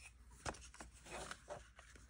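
Faint clicks and rustles of a plastic cassette case being handled and opened.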